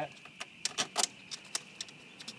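Several light metallic clicks and clinks, spread irregularly over two seconds, from the metal tubes of a home-made rain-cover frame being handled where it bolts onto a Yuba Mundo cargo bike's monkey bars.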